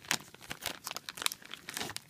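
Clear plastic bag of wax melts crinkling as it is handled in the hand, a dense run of small crackles.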